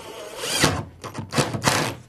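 Rasping strokes of hand sanding on a painted wooden step: one long stroke in the first second, then two quicker strokes close together near the end.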